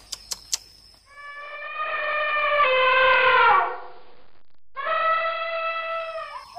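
Elephant trumpeting: two long, loud calls, the first swelling and then sliding down in pitch at its end, the second shorter.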